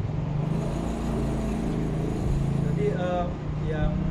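A low, steady hum during a pause in the talk, with a man's voice starting briefly near the end.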